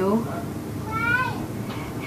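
A cat meowing once about a second in, a short call that rises and then falls in pitch.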